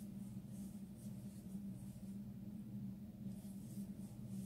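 Crochet hook drawing wool yarn through stitches: soft, faint rustling strokes about every half second. A low steady hum runs underneath.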